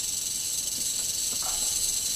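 Eastern diamondback rattlesnake rattling its tail: a steady, high-pitched buzz.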